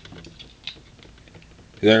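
Faint clicks and handling noise as a small light is got out and switched on, with one more distinct click about two-thirds of a second in. A voice starts near the end.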